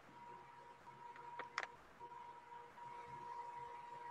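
Faint background with a thin, steady high-pitched tone and two small clicks about a second and a half in.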